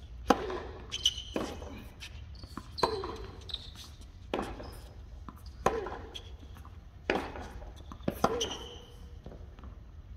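Tennis balls struck by rackets and bouncing on a hard court in a practice rally: sharp single hits roughly every second or so, each with a short ringing tail. The loudest hit comes just after the start, on a serve.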